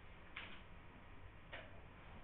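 Quiet room tone with two faint, short scratching ticks about a second apart.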